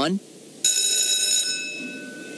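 A bell chime: one bright tone struck about half a second in, ringing out and fading away. It is the class bell signalling the end of the lecture.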